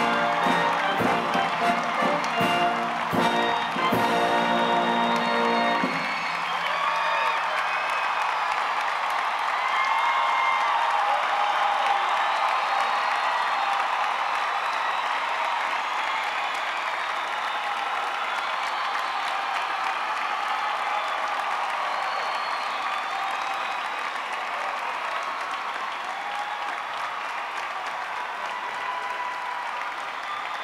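Music playing over a large crowd's applause. The music stops about six seconds in, leaving sustained applause with some cheering that slowly fades.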